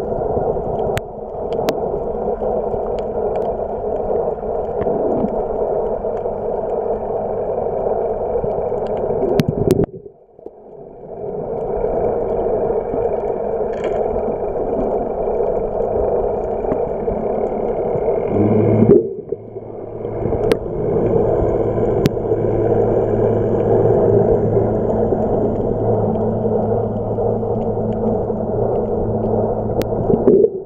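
Muffled, steady underwater rushing noise picked up by a submerged camera, with a faint hum and a few sharp clicks. It drops out briefly twice, about a third and about two-thirds of the way through.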